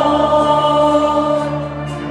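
Live band music heard from the audience in a concert hall: a long, loud held chord with voices singing, steady throughout.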